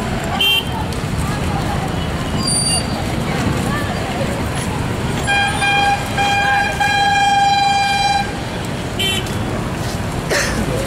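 A vehicle horn honks about five seconds in: two short blasts and then a longer one of about a second and a half, over a steady bed of crowd voices and traffic noise.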